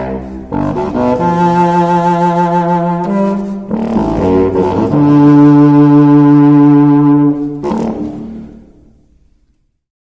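Unaccompanied contrabassoon playing a few long, held low notes, the last and longest lasting about two and a half seconds. After it stops, about seven and a half seconds in, the sound dies away to silence within two seconds.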